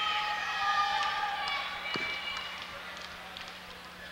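Crowd noise in a gymnasium, a blend of many voices, fading gradually during a stoppage for free throws. A single short thump comes about two seconds in.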